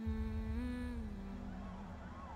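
Opening of a film teaser soundtrack: a low sustained droning tone over a deep rumble, starting suddenly. Its pitch lifts slightly about half a second in and then settles a little lower.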